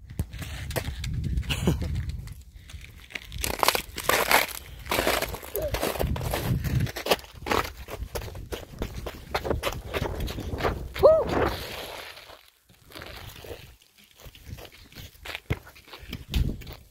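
Footsteps crunching through snow, with rustling and knocking from the phone being handled, in an irregular run that drops off briefly near the end. A short voiced sound comes about eleven seconds in.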